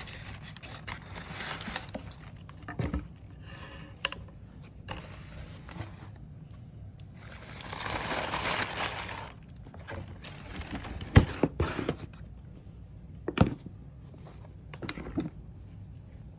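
Hands rustling and scraping the white wrapping paper and cardboard of a shoebox while unpacking sneakers, with a few sharp knocks of the box and shoes being handled in the second half, the loudest of them about eleven seconds in.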